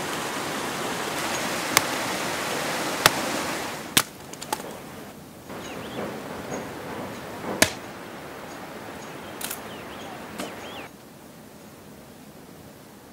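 Steady rush of a mountain stream for the first few seconds. Then a few sharp strikes of an axe splitting firewood, several seconds apart.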